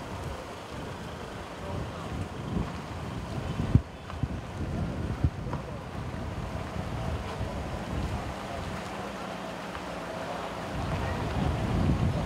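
A car driving slowly over a broken, potholed asphalt road: low rumble of the car with wind buffeting the microphone. A few sharp knocks come in the first half, from jolts over the rough surface.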